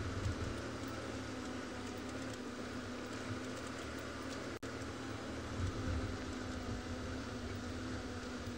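Open safari vehicle's engine running steadily as it drives along a dirt track: a low rumble with a steady hum, broken by a momentary dropout about halfway.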